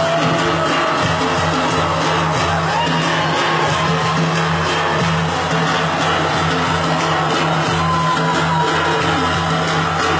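Live band music with frame drums (def and erbane) beating a steady rhythm under a sustained bass line, loud and unbroken, recorded from within the crowd.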